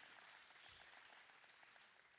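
Faint applause from a congregation, a dense patter of hand claps that thins out and dies away toward the end.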